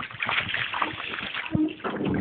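Water splashing and sloshing irregularly at the side of the boat as a hooked steelhead thrashes at the surface while it is brought to the net.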